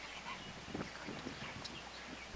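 Faint, steady wash of surf, with a few faint clicks.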